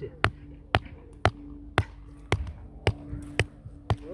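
Rubber mallet hammering a ground stake for a volleyball net's guy line into the turf: eight even blows, about two a second.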